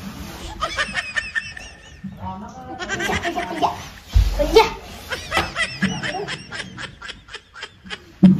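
Laughter in rapid repeated bursts, with a dull low bump about halfway through.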